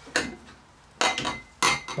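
A few sharp metallic clinks and knocks, about three in two seconds, as a Davies Craig EWP 150 electric water pump is handled and set against metal parts in the engine bay; one clink rings briefly.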